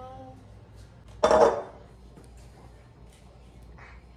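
Light clatter of a plastic knife being worked into a block of butter on a countertop, with one short loud sound about a second in and a brief voice at the very start.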